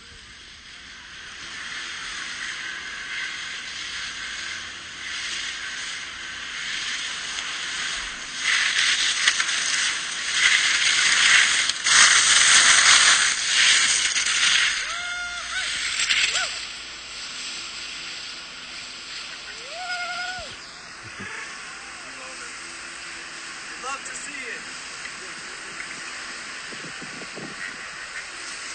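Continuous hissing scrape of skis sliding and carving over bumpy, rutted snow, with wind on the microphone, loudest around the middle. Drawn-out shouts from someone on the chairlift cut through about halfway and twice more later.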